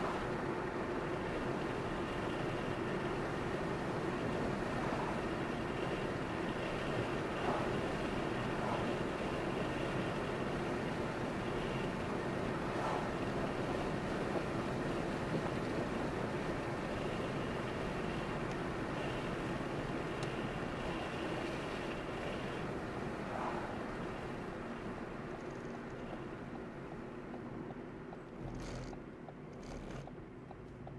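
A car driving: steady engine and tyre noise on the road, easing off over the last few seconds as the car slows, with two short clicks near the end.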